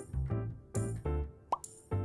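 Cheerful background music with a steady beat of short bass notes, and a quick upward-gliding pop sound about one and a half seconds in.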